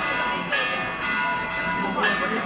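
Bells ringing, repeatedly struck so that their ringing tones overlap, over the chatter of a large crowd.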